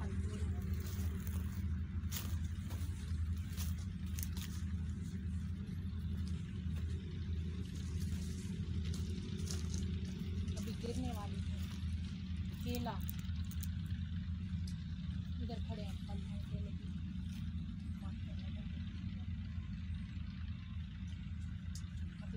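A steady low engine-like drone, with crackling and rustling of dry branches and leaves being handled.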